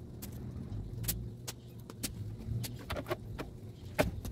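Irregular clicks and taps of a knife and hands against a plastic cutting board while raw chicken is trimmed, a few per second, over a low rumble that swells in the middle.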